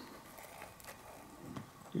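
Faint clicks and light scraping of a small plastic screw-top jar of acrylic nail powder being twisted open by hand.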